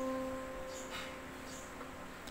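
A single middle C played on an electronic keyboard, sounding once and slowly fading away.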